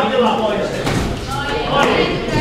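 Voices calling out and talking in a large, echoing hall, with a few sharp knocks mixed in.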